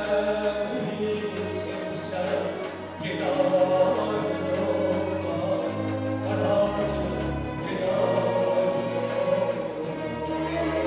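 Azerbaijani mugham-style singing over bowed strings (kamancha and a chamber string orchestra), with held, ornamented vocal lines and the bass note changing every second or so.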